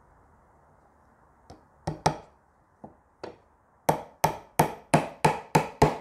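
Claw hammer driving a small panel pin through the side bar of a wooden beehive frame into the top bar. Two strikes about two seconds in and two lighter taps follow, then a run of seven evenly spaced strikes, about three a second, in the second half.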